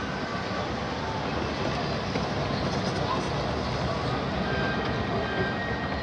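Steady background noise of a busy hall, with indistinct voices mixed in.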